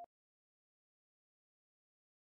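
Digital silence.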